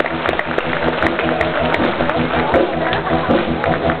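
Live circus band music: held chords over a regular tapping percussion beat.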